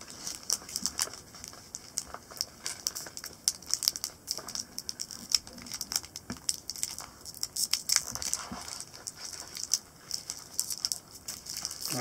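Foil trading-card packet crinkling and crackling in the fingers as it is worked open, with irregular crisp crackles throughout.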